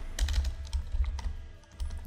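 Typing on a computer keyboard: a run of separate keystrokes at an uneven pace, each a sharp click with a low thud under it.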